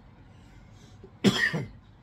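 A man coughs once, about a second in, into his fist.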